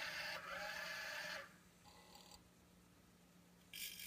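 Small hobby electric motors on an Arduino motor-shield test rig, running steadily with a faint mechanical sound and a light tone. The sound stops about one and a half seconds in, and after a near-silent gap a higher-pitched motor sound starts just before the end.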